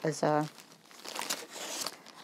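Clear plastic bag crinkling as hands pull a pattern booklet out of it: a run of irregular crackles.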